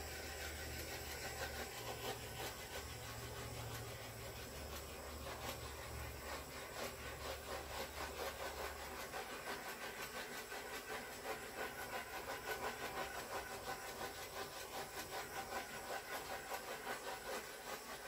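A handheld heat tool blowing steadily over a wet acrylic paint pour, heating the paint surface. A low hum sits under the hiss for about the first half; after that the hiss swells and fades rapidly as the tool is swept back and forth over the paint.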